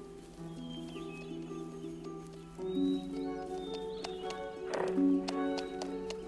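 Film score of sustained chords that change every couple of seconds. About halfway in, a horse's hooves join with sharp clops, and a short horse call comes near the end.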